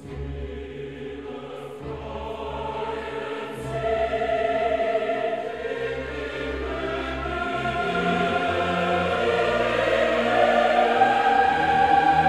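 Slow classical choral music: a choir singing long, sustained chords over a low held bass, swelling gradually louder.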